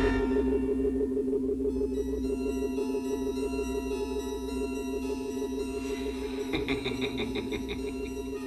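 Electronic science-fiction drone of steady synthesizer tones from a 1970s TV soundtrack. About six and a half seconds in, a quick run of high beeps comes in at roughly seven a second.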